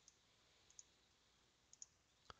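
Faint computer mouse clicks against near silence: a single click near the start, then two quick pairs, about a second apart.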